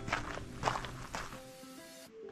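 Footsteps crunching on a sandy dirt trail, about two steps a second, fading out about a second and a half in. Background music with held notes plays throughout.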